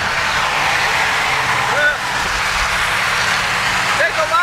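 Steady rush of wind and road noise through an open car window at highway speed.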